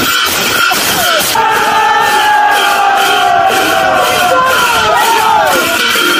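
A group of voices chanting with long held notes over hand cymbals clashed in a steady beat, about three strikes a second.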